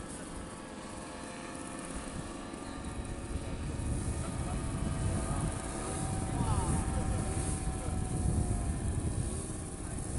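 Distant paramotor engine and propeller droning steadily overhead, with a low rumble that swells about four seconds in and eases near the end.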